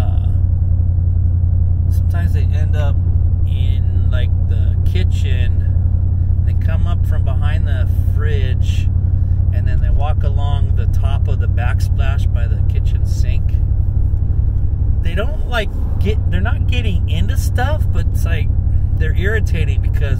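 Steady low rumble of road and engine noise inside a moving car's cabin, with a man talking over it.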